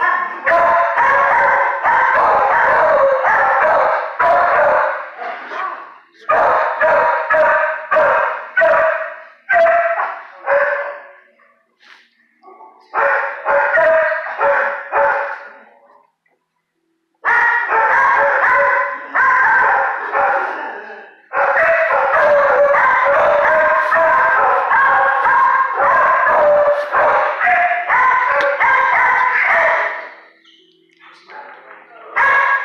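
Dogs barking in a shelter kennel, many overlapping barks in long continuous stretches broken by short pauses about 5, 12 and 16 seconds in.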